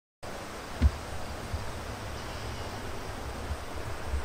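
Outdoor ambience with wind buffeting the microphone: a steady hiss over an uneven low rumble, with one brief thump about a second in.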